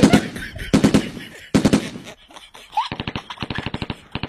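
Gunfire sound effect: three loud shots about three-quarters of a second apart, each with a ringing tail, then about three seconds in a rapid machine-gun burst of roughly ten rounds a second.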